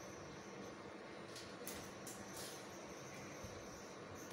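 Faint steady hiss with a low hum underneath, broken by a few soft rustles between about one and a half and two and a half seconds in.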